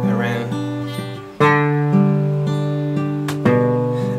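Acoustic guitar fingerpicked in a repeating thumb-index-middle-ring pattern over a held chord, new notes about every half second. The thumb moves the bass note to a different string twice, about a second and a half in and near the end, each change plucked harder, creating chord inversions.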